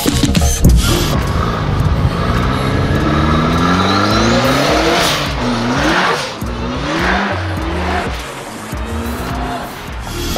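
Turbocharged Polaris Slingshot accelerating hard, its engine pitch climbing steadily and then dropping and climbing again several times as it shifts. It passes close by and fades near the end.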